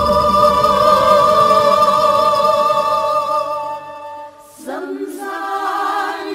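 Women's voices singing a Dao folk song over backing music. A long note is held and fades out about four seconds in, and after a short gap a new sung phrase begins.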